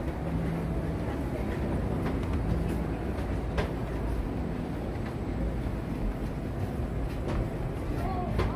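Steady low rumble of outdoor background noise with a faint hum, a few soft clicks and faint distant voices.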